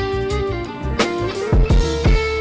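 Trap beat playing back at 85 BPM: a sustained melodic sample over deep bass notes, with sharp drum hits about a second in and twice more near the end.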